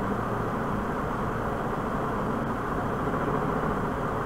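Steady background noise picked up by the microphone: an even low rumble and hiss with no distinct events.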